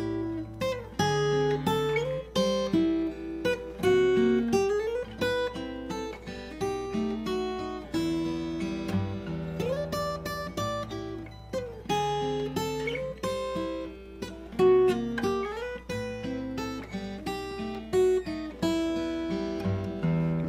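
Steel-string acoustic guitar played fingerstyle: a continuous passage of picked bass notes and melody in E minor, Am–B7–Em chords, each note plucked sharply and left ringing.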